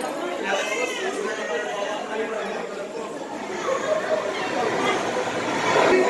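Many people talking at once: steady, overlapping chatter of guests seated at tables.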